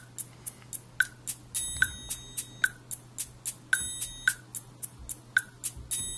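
Software drum kit in Ableton Live (a Drum Rack kit) playing a MIDI percussion loop at a slow 55 BPM: quick shaker and wood-block-like ticks about four a second, with a ringing triangle hit about every two seconds. It is the MIDI clip's notes now being turned into sound by the loaded kit.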